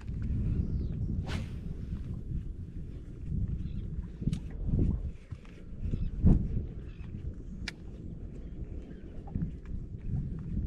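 Wind buffeting an action camera's microphone on open water, a low rumble that rises and falls, with a few sharp clicks.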